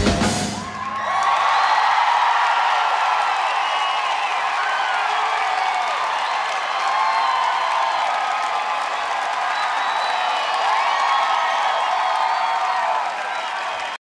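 The band's music stops within the first second. A concert crowd then cheers and applauds, with many high whoops and screams over the clapping, easing slightly near the end.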